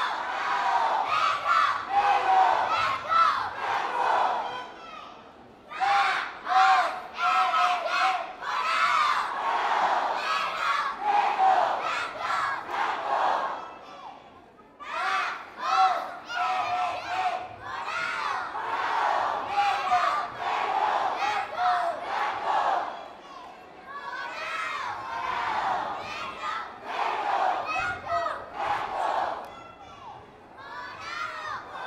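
Youth cheerleading squad shouting a cheer in unison, in chanted phrases broken by short pauses, with no music under it.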